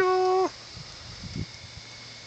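A person's voice gives one short meow-like call, held on one pitch for about half a second and dropping at the end.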